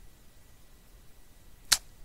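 Faint room tone, then a single sharp computer mouse click near the end.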